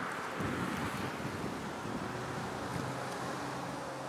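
Steady roadside traffic noise: an even rush of passing traffic with a faint low hum underneath.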